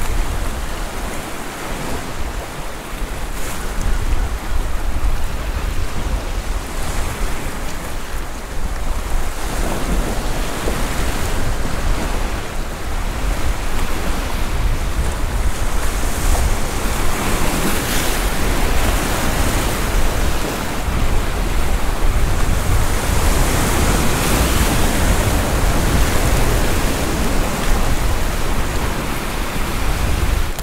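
Sea waves breaking and washing over a rock shore in a continuous surging rush that swells and eases, with a deep rumble of wind on the microphone underneath.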